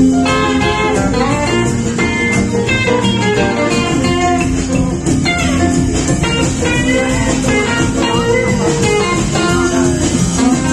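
Live rock and roll band playing an instrumental break, with a lead electric guitar bending and sliding notes over the bass and drums.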